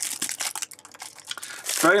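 Clear plastic kit bag crinkling as it is handled and turned in the hands: a quick run of small crackles, with the chrome-plated plastic parts sprue inside.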